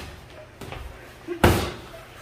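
Boxing gloves landing punches in sparring: a lighter hit just over half a second in, then a loud, sharp smack about one and a half seconds in.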